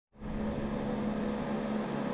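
Steady mechanical hum with a constant low drone and a light hiss, typical of an air conditioner, fan or pump running.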